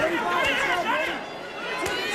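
Arena crowd voices chattering and calling out, several at once, with a couple of short knocks, about half a second in and near the end.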